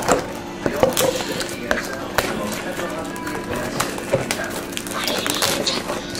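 A box of 2011 Panini Absolute Memorabilia football cards being opened by hand: a string of short crackles and taps from cardboard and pack wrappers.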